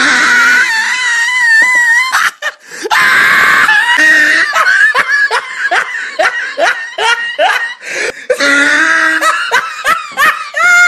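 Loud, high-pitched laughter. It opens with long wavering shrieks, then from about four seconds in breaks into a run of quick laughs, each falling in pitch, about two to three a second.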